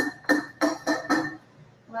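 Countertop blender pulsed on and off while blending corn: a rapid string of short bursts with a steady whine, stopping about a second and a half in.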